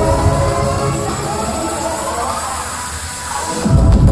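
Loud hardstyle dance music from a festival sound system, heard from within the crowd: synth melody over heavy bass. The bass thins out briefly a couple of seconds in, then the kick and bass come back loudly just before the end.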